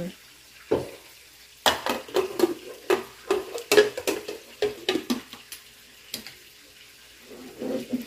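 Aluminium pressure cooker lid being set on the pot and turned into place: a knock about a second in, then a run of metal clinks and scrapes for several seconds.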